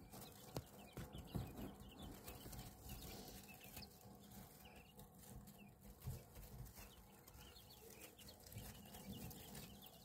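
Faint, scattered peeping of newly hatched quail chicks, with a few soft clicks from the bedding.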